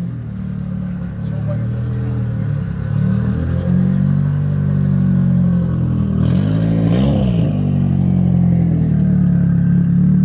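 A drift car's SR20 four-cylinder engine idling, fading in over the first few seconds. About seven seconds in it is blipped once: the pitch rises and falls back to idle.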